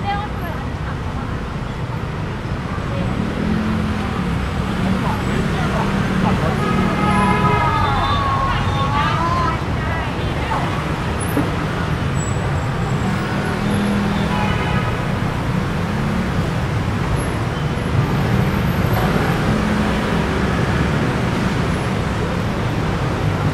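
City road traffic: a steady low rumble of cars, buses and motorbikes crawling in congestion, with passers-by talking close by, most plainly about seven to nine seconds in and again around fourteen seconds.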